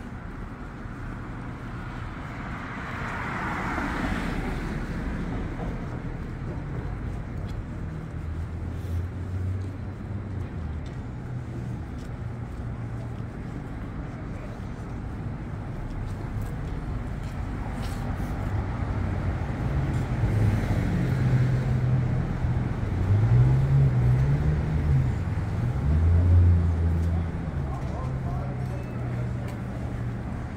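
Street traffic: a car passes on the road about four seconds in and another around twenty seconds in, over a steady low rumble of engines.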